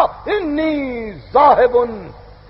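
A man's voice on an old lecture tape recording, drawing out one long syllable that falls in pitch for about a second, then a shorter syllable: intoned, oratorical speech.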